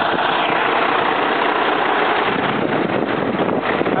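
2005 Kenworth T300's diesel engine idling steadily with the hood tilted open.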